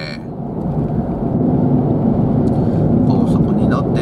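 Steady road and engine noise of a car at speed, heard inside the cabin, with a faint voice in the last second.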